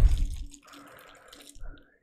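Faint, soft crinkling of a small plastic bag as a micro USB cable is handled and taken out of it, over a faint steady hum, after the tail of a man's voice at the start.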